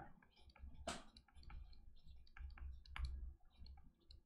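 Faint, irregular clicks and taps of a stylus on a drawing tablet while handwriting is written, with one sharper tap about a second in, over a low steady hum.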